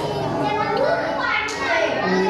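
A man reciting the Quran aloud in Arabic, chanting the verses with held, bending pitch.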